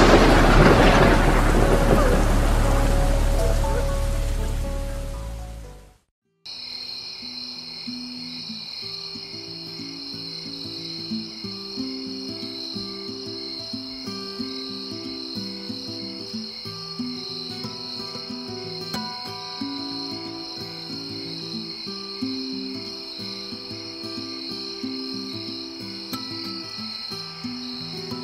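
A thunderclap with rain, rumbling and fading away over about six seconds. After a sudden cut to silence, soft music of held notes plays over a steady chirping of crickets.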